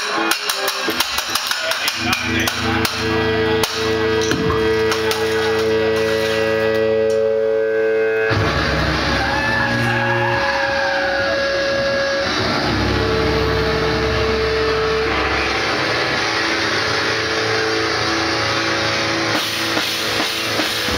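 Amplified noise interlude from a band's keyboard and effects: held electronic tones with rapid clicking, changing abruptly about eight seconds in to a low rumbling noise with a wavering whine above it.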